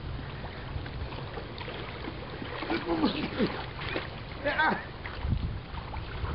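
Pool water sloshing and splashing as a swimming dog and a man thrash about, with wind rumbling on the microphone. Brief pitched voice-like cries come about three seconds in and again near four and a half seconds.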